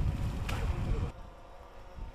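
Outdoor harbour-side noise, a rushing hiss with a low rumble and a sharp click about half a second in, dropping to a quieter hush after about a second.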